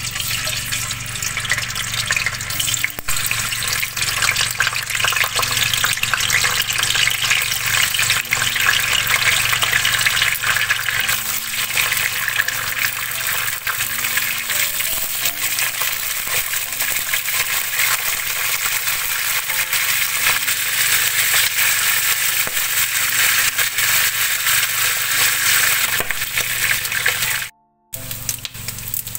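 Chicken feet deep-frying in hot oil in a wok over high heat: steady, loud sizzling with fine crackling. It cuts out briefly near the end.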